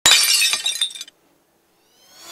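Glass-shattering sound effect: a sudden crash of breaking glass followed by tinkling shards, dying away about a second in.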